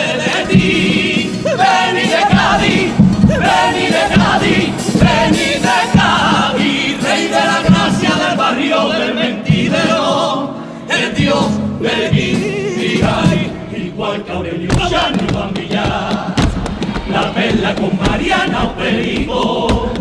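Cádiz carnival comparsa: a male choir singing a pasodoble in several voices, with drum beats and guitar accompaniment.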